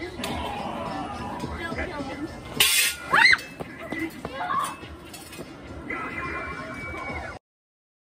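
Voices and spooky haunt music, with a loud short hissing burst followed at once by a shrill rising-and-falling shriek about three seconds in; the sound cuts off abruptly shortly before the end.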